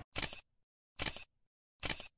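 Camera shutter sound effect clicking three times, about 0.8 seconds apart, with dead silence between the clicks.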